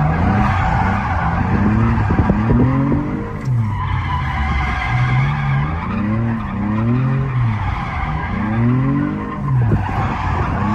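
Nissan 350Z's V6 engine revving up and down over and over as the car is drifted through a figure eight, heard from inside the cabin. The rear tyres squeal throughout as they break loose.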